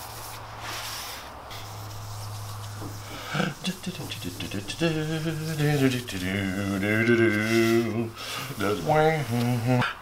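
Soft rubbing hiss of a gloved hand working paste wax into a cast-iron table saw top. From about halfway through, a man hums a wordless tune over it.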